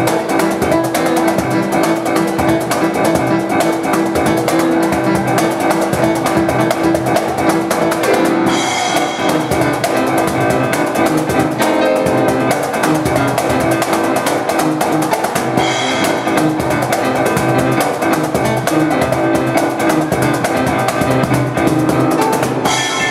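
A keyboard and cajon duo playing an instrumental piece. The cajon keeps a steady beat under the keyboard, and there are cymbal crashes about eight and a half seconds in and again near sixteen seconds.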